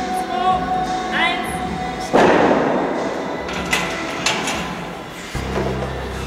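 A single loud thump about two seconds in, echoing in a large gym hall, followed by a couple of lighter knocks, with voices and music in the background.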